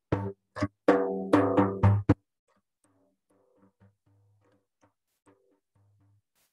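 Large hand-held frame drum struck by hand in a quick run of about seven strokes, each with a low ringing tone. About two seconds in, the sound drops away almost completely and only faint strokes remain: the recording device is cutting out the sound, as it does until the singing starts.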